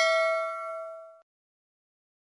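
Bell-like chime of an end-card sound effect, several ringing tones dying away after a strike and stopping abruptly about a second in.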